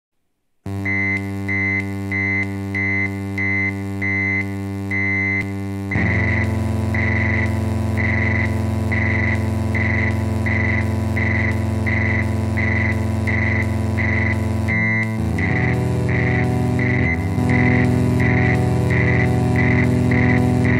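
Synthesizer music played on a Korg Volca Keys: sustained droning chords with a steady pulse of about two beats a second. It starts after a brief silence, gets fuller about six seconds in and changes chord near the end.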